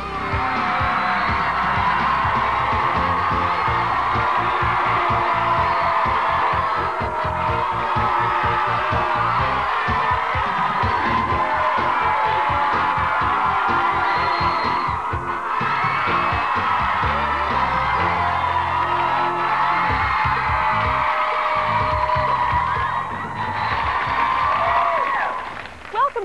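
Upbeat TV theme music with a steady beat, and a studio audience of kids cheering and screaming over it. It is loud throughout and drops away near the end.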